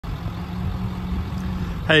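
Ford 6.4 Power Stroke diesel engine idling with a steady low rumble; a man's voice begins just before the end.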